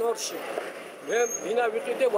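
A man talking, with city street traffic in the background that comes through during a short pause in his speech.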